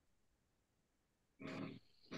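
Near silence over the video call, then near the end a short, faint voice-like sound, a person's voice too quiet to make out words.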